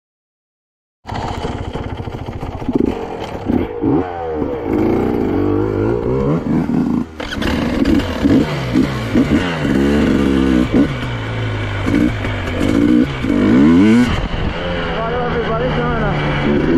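2023 KTM 300 EXC single-cylinder two-stroke enduro engine being ridden, revving up and down over and over. It starts suddenly about a second in and dips briefly about halfway through.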